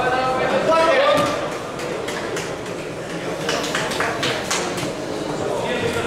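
Voices calling out in a large, echoing sports hall, then from about two seconds in a quick run of sharp claps, several a second.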